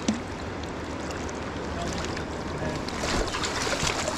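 River current running over a shallow gravel bed, with splashing building from about three seconds in as a hooked coho salmon thrashes at the surface near the landing net.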